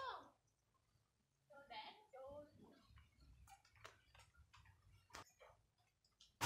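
Near silence, with faint voices in the background at the start and again about two seconds in, then a few faint scattered clicks.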